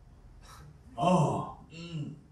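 A man's voice gasping twice, the first louder and longer, after a short sharp breath.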